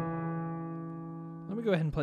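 Korg SV1 stage piano: a right-hand chord struck once and left to ring, fading steadily for about a second and a half before a man's voice comes in.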